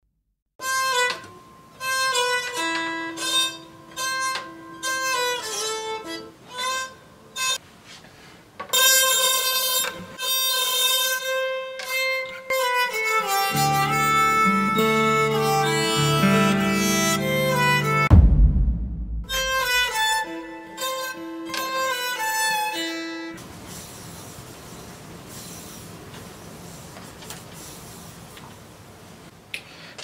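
Steel-string acoustic guitar bowed with a bow, drawing long sustained notes in a slow melody, with lower notes joining in for a few seconds mid-way. A sudden loud low thump with a falling slide breaks in at about 18 seconds, and the last several seconds hold only a faint steady hiss.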